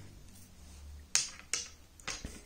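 Two sharp clicks about a third of a second apart as steel-shafted golf irons are handled and set down among other clubs.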